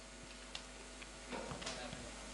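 Quiet room tone over a steady low hum. There is one light click about half a second in, then a short patch of faint clicks and rustling near the end as paper is handled on a wooden lectern.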